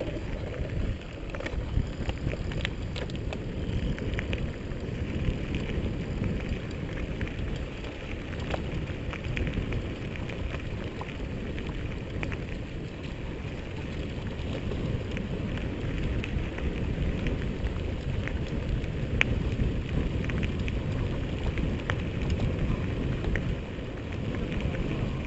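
Riding noise from a camera on a mountain bike moving along a dirt track: a steady low rumble of wind on the microphone and tyres rolling, with many small scattered clicks and rattles.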